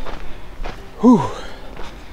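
Hiker's footsteps on a dirt trail, a few soft steps, with a short 'whoo' from the walker about a second in that rises and falls in pitch.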